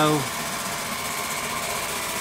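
Electric drill running in reverse with a wire wheel brush scrubbing across a wooden beam, stripping out the soft grain to give it an aged texture: a steady whir with a faint high whine.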